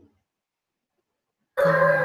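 Near silence, then about one and a half seconds in a steady sound with held tones cuts in suddenly: music from a sound truck's loudspeaker passing in the street, picked up through a video-call microphone.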